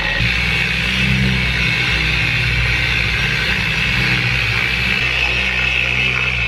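Handheld electric car polisher with a foam pad running steadily on the paint of a car door, a low motor hum under a higher whine. It is working compound into the paint to cut out bird-dropping damage.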